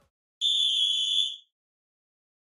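A single high-pitched electronic beep, held steady for about a second and cut off cleanly: a sound effect marking the change to the next segment.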